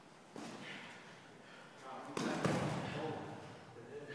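Dull thumps of light boxing sparring, gloved punches and footwork on a padded mat: one sharp knock about a third of a second in, then a louder cluster of thuds lasting about a second from about two seconds in.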